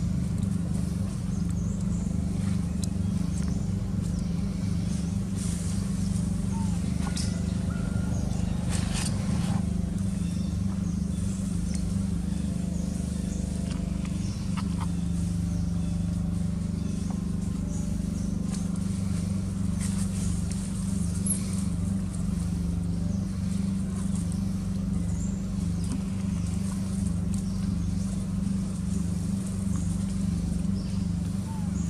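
A steady low drone like a running engine, with a few faint clicks and high chirps over it.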